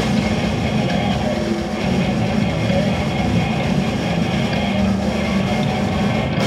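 Slamming brutal death metal band playing live at high volume: heavy low guitars and bass over drums, a dense, low, rumbling wall of sound.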